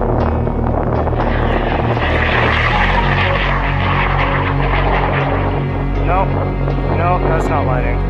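High-power rocket motor burning at liftoff with a loud rushing noise, fading after a few seconds as the rocket climbs. Near the end people cheer and whoop. Background music with sustained bass notes runs under it all.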